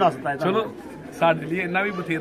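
Men talking, with pigeons cooing in the background.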